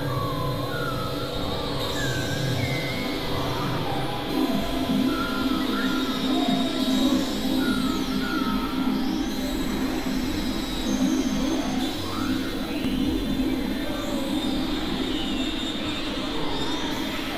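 Dense mix of several overlapping music and sound tracks playing at once: a steady low drone with short gliding tones above it.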